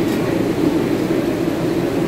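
Steady background noise of a busy buffet dining room: a constant low rumble of ventilation and crowd.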